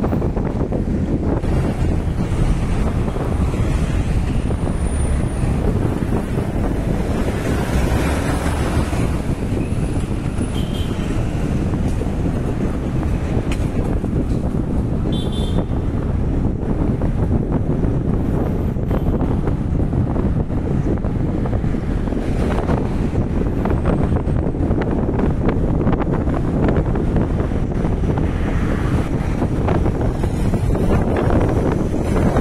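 Steady low road rumble and wind buffeting the microphone from a moving vehicle, with passing city traffic around it.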